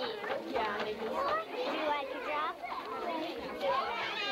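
Many young children talking and calling out at once in a steady, overlapping chatter.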